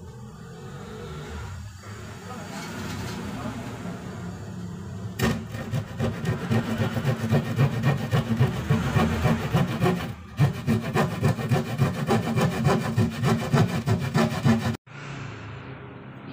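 Handsaw cutting through a sheet of plywood. After a few seconds of quieter rasping it settles into quick, rhythmic back-and-forth strokes, then stops abruptly near the end.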